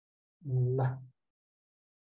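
A man's voice making one brief filler sound at a steady low pitch, lasting under a second; silence around it.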